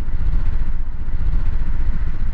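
A vehicle travelling at speed along a highway: a steady, low rumble of road and engine noise.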